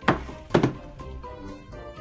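Two thumps, about half a second apart, as large cardboard gift boxes are set down on a table, over background music.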